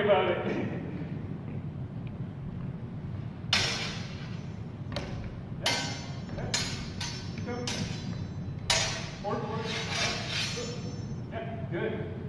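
Steel practice longswords clashing during sparring, about six sharp metallic strikes with a brief ring, in a large echoing gym.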